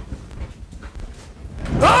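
Low studio rumble with a few faint knocks, then near the end a voice swoops upward into a held sung note as a song begins.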